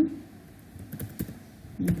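Typing on a computer keyboard: a few irregular keystrokes.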